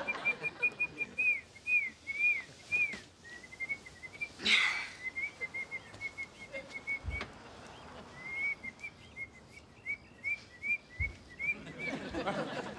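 High whistled birdsong: quick runs of short chirps and arched, slurred notes, repeating throughout. About four and a half seconds in, a brief loud whoosh cuts across it, and there are a couple of soft low thumps later on.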